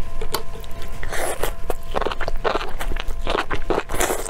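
Close-miked eating sounds: wet biting and chewing of chili-coated enoki mushrooms. The sounds come in irregular noisy bursts with clicks, starting about a second in.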